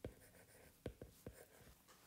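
Faint taps of a stylus tip on a tablet's glass screen while handwriting Japanese kana: one click at the start, then three in quick succession about a second in.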